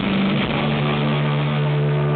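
Heavy metal band playing live in an arena, recorded from the crowd with a narrow, boomy sound. After about half a second of full-band playing, a single low note is held and drones on steadily.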